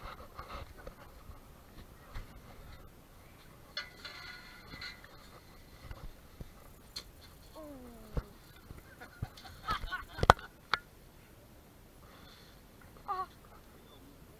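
Scattered knocks and rattles as a nurse shark is hauled up in a metal-hooped drop net and set down on a concrete pier, with a cluster of sharp knocks about ten seconds in. A short falling cry of surprise comes from a person about eight seconds in, and a brief one near the end.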